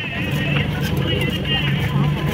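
Heavy knife chopping through a seer fish onto a wooden block in a few sharp knocks, over a steady low engine-like hum and background voices.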